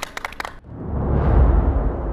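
Clapping cut off abruptly about half a second in, followed by a cinematic logo-transition sound effect. A deep rumbling boom with a whoosh swells to a peak just past the middle, then slowly dies away.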